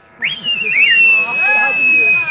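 A long, high-pitched whistle that rises quickly, then holds one steady note, with a voice faintly underneath.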